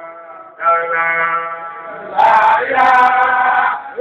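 Men's voices chanting a Sufi zikr in long, held notes. The chant swells louder about two seconds in.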